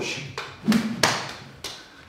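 A few sharp taps, roughly half a second apart, as a kali stick is caught and passed between the hands while twirling through pickups.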